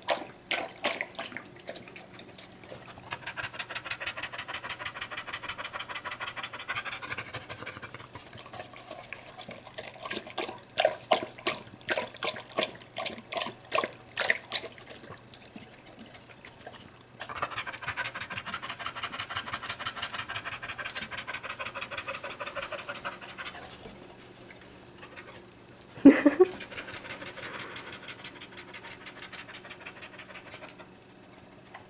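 Black Labrador retriever lapping water from a plastic bowl in runs of rhythmic laps, with long stretches of rapid panting in between. About 26 s in comes one loud short sound that sweeps down in pitch.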